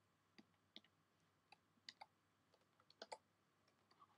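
Computer keyboard typing: about a dozen faint, irregular key clicks as a CSS selector is typed.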